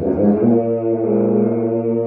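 Tuba played solo: one note moves to a new note about half a second in, which is then held steadily.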